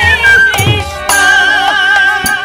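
Bengali nam-kirtan music: a man singing over a transverse flute and harmonium, with khol drum strokes and kartal hand cymbals. The music dips briefly just after half a second in, and the next phrase comes in strongly at about a second.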